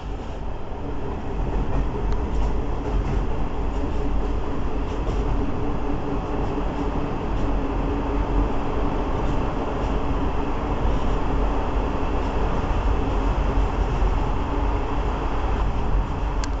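Steady running rumble of a moving passenger train, wheels on rail, with a faint hum; it swells slightly about a second in and then holds.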